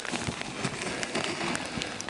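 Plastic snow shovel scraping and crunching through icy snow, a continuous rough scrape with small irregular ticks.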